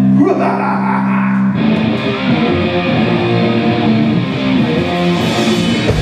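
Live rock band on electric guitars, bass and drums: a held guitar chord rings with a short slide near the start, then about a second and a half in the drums and the rest of the band come in together and play on.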